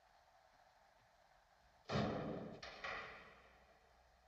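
A door opening with a sudden loud rush of sound about halfway through that dies away within about a second, cut by two more abrupt onsets in quick succession.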